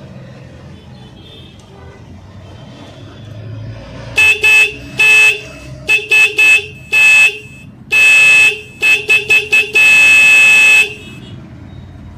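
A pair of motorcycle electric disc horns, newly wired through a horn relay so they take current straight from the battery, sounding in a string of short toots, with two longer held blasts near the end. They are loud, and their working shows the relay connection is correct.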